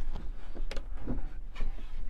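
A few light knocks and clicks from a folding campervan table being swung out from beneath its top, over a low steady rumble.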